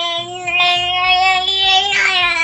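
A ten-month-old baby holding one long, steady, high-pitched 'aah' with the bottle in her mouth.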